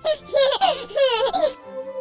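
A young child's giggling laughter, in two short bursts over the first second and a half, over background music.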